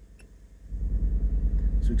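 A low, evenly pulsing rumble that swells up about three-quarters of a second in, after a faint click.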